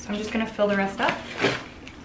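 A woman's short wordless vocal sounds, with a few light knocks from handling a clay pot and potting mix.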